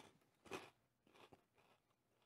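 Mostly near silence with faint chewing of a crunchy Cheeto corn snack: one soft crunch about half a second in and a few faint clicks later.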